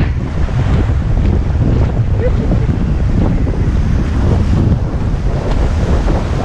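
Strong wind buffeting the microphone as a steady loud rumble, over the wash of breaking surf at the water's edge; the wind is raising choppy waves.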